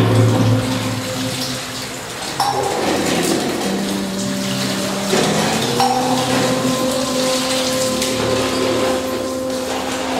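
Water splashing and trickling off a stone Shiva lingam during its ritual bath, with brass vessels clinking now and then. Long held droning notes of devotional music run underneath, changing pitch twice.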